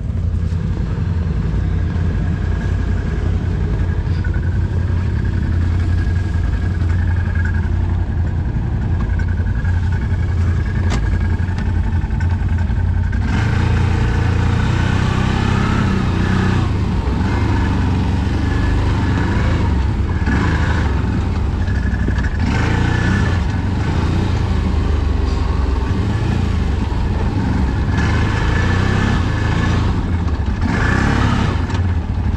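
Off-road vehicle engine running at a steady low drone; a little under halfway through the sound turns louder and busier, with changing engine pitch, as the ATV rides off over the snow-covered trail.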